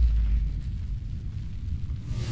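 Deep cinematic boom from a broadcast graphics sting, its low rumble fading away.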